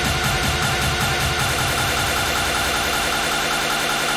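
Hard techno DJ mix playing: a dense electronic dance track over a steady, repeating bass beat. The low end thins out near the end.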